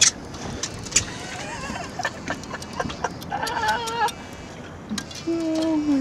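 A person's voice gives a wavering, high-pitched call from about three seconds in, then a lower drawn-out vocal sound near the end, over scattered sharp clicks and knocks.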